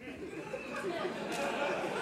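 Theatre audience murmuring and chattering, the crowd noise growing steadily louder.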